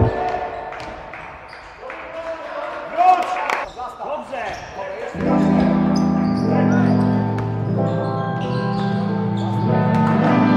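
Basketball game sound in a gym: a ball bouncing and players' voices. About five seconds in, background music with long held chords comes in and carries on.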